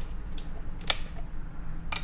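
Twist cap of a plastic Coca-Cola bottle being unscrewed, cracking the seal with a few sharp clicks, the loudest about a second in.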